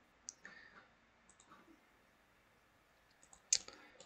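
A few sharp computer mouse clicks spaced out over near quiet, the loudest about three and a half seconds in.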